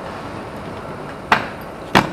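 Two sharp clacks of inline skates striking the concrete ledge and the tiled ground during a trick attempt, one about a second and a third in and one just before the end.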